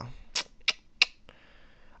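Three short, sharp clicks about a third of a second apart, then faint room tone.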